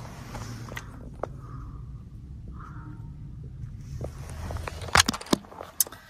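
Low engine rumble of a school bus driving past, heard from inside a car, swelling about four seconds in and then falling away. A few sharp clicks near the end.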